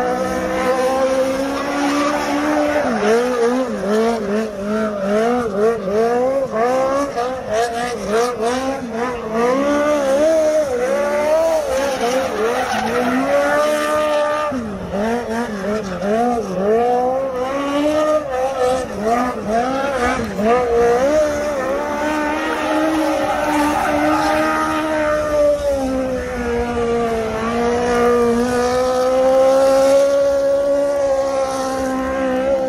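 Small race car's engine revving hard through a burnout, its pitch swooping up and down in quick repeated surges as the car spins donuts. Near the end it settles into a steadier, held high note.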